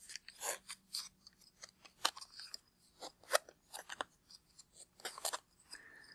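Faint, irregular clicks and rustles of a plastic ball mold and the metal binder clips holding it shut, handled and turned over in the hands.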